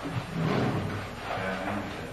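A man's indistinct, muffled voice in two short stretches, over a steady low hum from the old tape recording.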